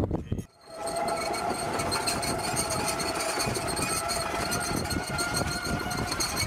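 Tracked MUTT unmanned ground vehicle driving over dirt. Its drive gives a steady whine and its tracks a rapid clatter, starting just under a second in after a short noise and a brief break.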